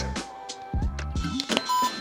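Background music, with a short electronic beep near the end: a workout interval timer signalling the start of the next 45-second set.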